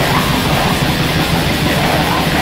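Raw black metal: heavily distorted guitars in a dense, steady wall of noise with no breaks.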